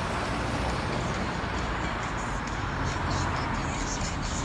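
Road traffic noise: a car's engine and tyres as it drives past, over a steady low rumble.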